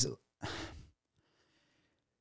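The tail of a man's word, then a short breath into a close microphone about half a second in, and near silence after it.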